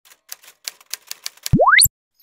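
Intro sound effects: a run of typewriter-like key clicks, about eight spaced unevenly over a second and a half. They are followed by a louder rising whistle that sweeps from very low to very high pitch in a fraction of a second and cuts off suddenly.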